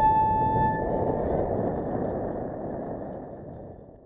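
A violin holds one high bowed note for about a second before it stops, over the steady rush of wind and riding noise on a helmet microphone, which then fades out gradually.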